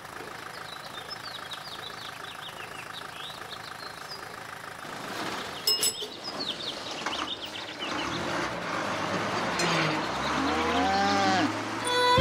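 A cow mooing once near the end, one long call rising and falling in pitch, over the steady running of a bus engine. About halfway through there is a short, sharp ringing clink.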